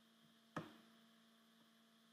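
Near silence with a faint steady electrical hum, broken by a single sharp computer-mouse click about half a second in.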